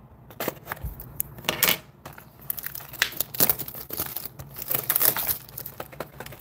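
Cardboard trading-card mini-box being handled and slid out of its box: irregular rustling and scraping of cardboard with light knocks.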